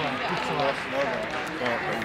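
Indistinct background chatter: several voices talking at once, with no single voice standing out.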